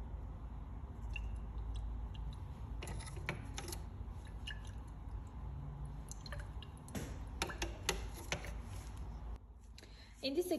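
A glass test tube of oil and solvent being handled and shaken, giving a few small glass clicks and faint liquid movement over a low steady hum.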